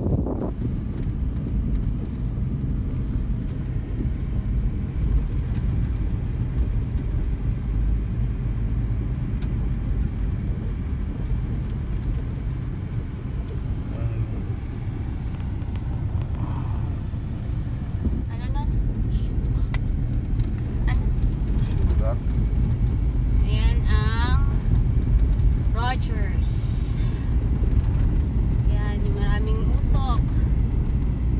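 Steady low rumble of a Honda CR-V's engine and tyres heard from inside the cabin while driving on snow-covered roads.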